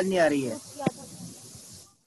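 A participant's microphone line on an online call carrying a steady hiss of line noise, with a few words at the start and a single click about a second in; the hiss cuts off suddenly near the end as the line drops.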